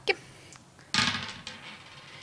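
Three six-sided dice thrown onto a tabletop, clattering and rolling for almost a second, starting about a second in.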